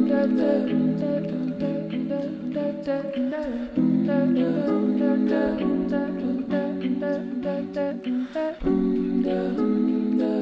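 Keyboard playing slow sustained chords with a wordless hummed vocal over them; the chord changes about four seconds in and again near nine seconds.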